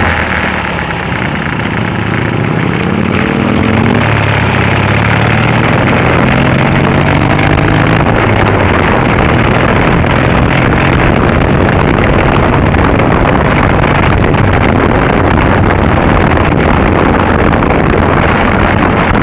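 Triumph Bonneville's parallel-twin engine with wind rush, heard from the rider's seat. The revs climb over the first few seconds as the bike accelerates, then hold steady at a cruise.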